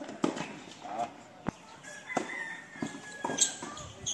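Tennis ball being struck by rackets and bouncing on a hard court during a doubles rally: several sharp knocks at irregular spacing, the loudest near the end. Players' voices call out between them.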